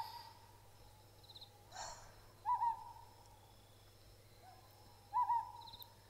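An owl hooting twice, a few seconds apart, each call a short wavering note that trails off, with a fainter call just before each. A brief soft hiss comes just before the first hoot.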